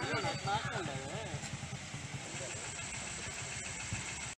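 Motorcycle engine running at low revs, a steady low pulse of several beats a second, with faint voices over it in about the first second.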